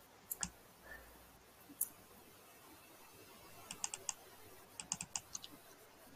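Faint computer keyboard keystrokes: a few scattered clicks, then two quick runs of taps about four and five seconds in.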